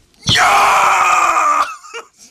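A man's long, loud yell, a drawn-out "yaaah" with a slight fall in pitch, acted out as a shout to chase a bird off a worm.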